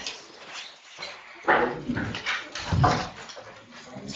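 A table microphone being handled, giving two loud bumps about a second and a half apart.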